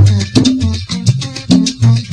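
Salsa band playing live: a bass line moving under piano and other pitched instruments, with steady percussion strikes keeping the beat.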